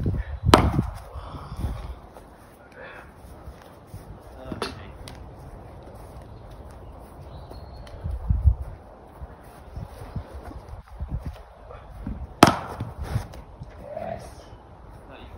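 A cricket bat striking the ball with a sharp crack about half a second in. There is a fainter knock a few seconds later and another sharp crack near the end, with wind rumbling on the microphone in between.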